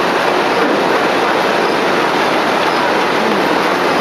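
Automatic silk reeling machine running: a loud, steady, dense mechanical noise that holds level without a break.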